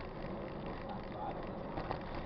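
Steady rumbling noise of a mountain bike rolling along an unpaved dirt road, with faint voices about a second in.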